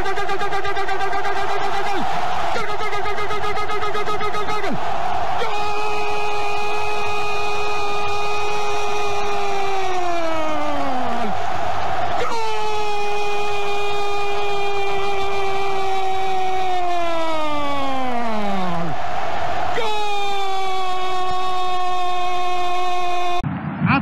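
A Spanish-language football commentator's drawn-out goal call, "gol" shouted and held on one pitch for several seconds per breath, each breath sliding down in pitch as it runs out, over stadium crowd noise. After two shorter calls come three long ones, the longest about seven seconds.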